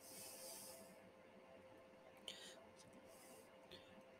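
Near silence: faint room tone with a soft breath at the start and a couple of quiet computer mouse clicks.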